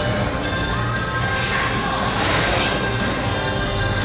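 Background music: a steady track of sustained tones with recurring swelling rises.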